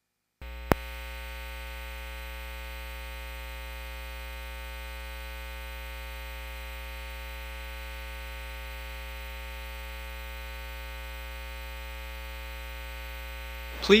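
Steady, buzzy electrical mains hum that cuts in abruptly out of dead silence about half a second in, with a single sharp click just after, then holds unchanged.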